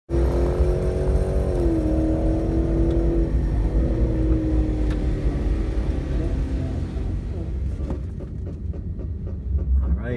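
V8 engines idling in the drag-strip staging lanes, a low steady rumble heard from inside a car's cabin. A droning tone sits over the rumble at first, dips slightly in pitch about two seconds in, and fades out by about six seconds.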